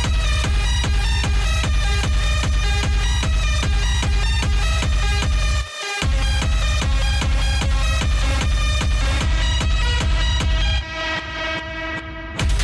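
Hard techno mix: a heavy kick drum on a steady beat under repeating synth tones. The kick drops out for a moment about six seconds in, and near the end the high end is filtered away.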